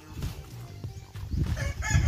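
A rooster crowing, starting near the end.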